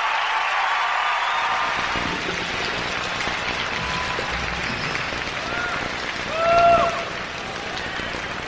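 Large arena crowd applauding and cheering between acts, the applause slowly thinning. A few audience members call out, with one loud shout about six and a half seconds in.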